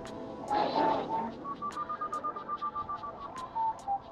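Paragliding variometer beeping rapidly, about six beeps a second, its pitch stepping up and then falling away near the end: the climb signal. A brief rush of wind noise on the microphone about half a second in, over background music with a beat.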